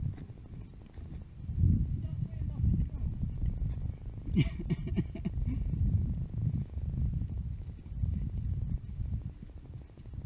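A ridden horse's hooves on a forest track, under a low, uneven rumble of movement noise on the microphone.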